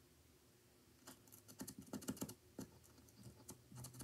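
Faint, irregular light tapping and scratching of a squeeze-type correction pen's tip dabbed against a paper card, starting about a second in.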